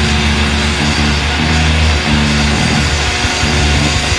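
Death metal band playing a heavy riff on distorted electric guitars and bass over drums, with low held notes that shift in pitch every half second or so.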